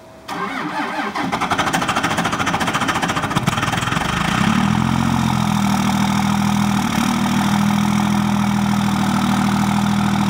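Cummins 24-valve 5.9-litre inline-six turbodiesel of a 2002 Dodge Ram 2500 being cold-started in deep cold: the starter cranks for a few seconds, then the engine catches about four seconds in and settles into a steady idle.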